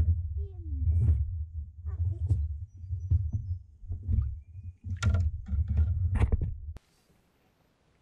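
A landing net scooping a bream out of the water beside a kayak: knocks and splashes over a steady low rumble of handling on the microphone, cutting off suddenly near the end.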